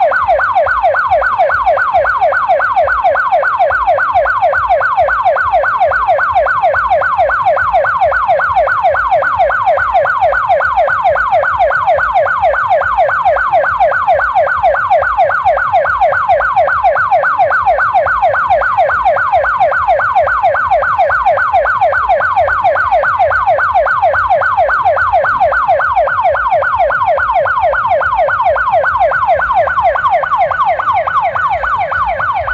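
Police van's electronic siren on a fast yelp: quick rising sweeps, several a second, repeating evenly and without a break.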